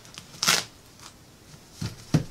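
A brief crackly rustle of fabric being handled and pressed flat about half a second in, followed by a couple of faint soft taps near the end.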